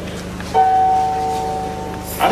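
A chord played on an electronic keyboard, starting suddenly about half a second in and held, slowly fading.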